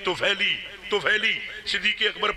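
A man speaking continuously into a handheld microphone, delivering a religious speech.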